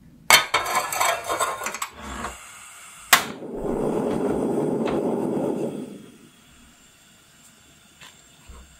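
An enamel saucepan set down and shuffled on the cast-iron grate of a portable gas stove, rattling for about a second and a half. Then a single sharp click of the stove's igniter and the steady rush of the gas burner lighting, which dies down about two and a half seconds later as the flame settles to low heat.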